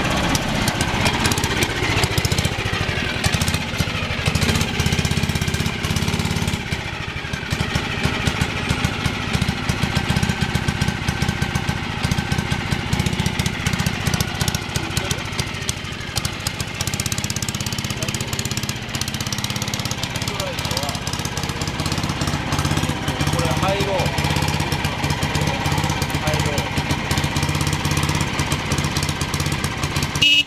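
1959 Mitsubishi Silver Pigeon C83 scooter's single engine running steadily close by, with a rapid, even firing beat.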